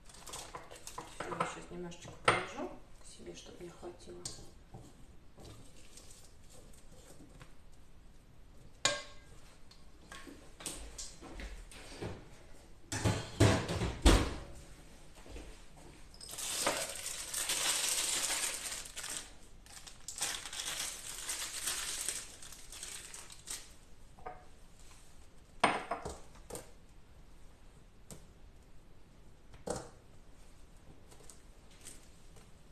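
Kitchen utensil sounds around a steel stand-mixer bowl: a spatula scraping and clinking against the bowl, then a cluster of loud knocks about halfway through as the bowl is handled. After that comes a long rustling hiss lasting several seconds, with a few more clicks near the end.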